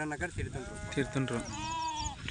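Sheep bleating: a long, slightly wavering call starting about half a second in and lasting well over a second.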